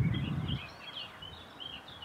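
Small birds singing, a quick overlapping stream of high chirps and twitters, with a brief low rumble in the first half second.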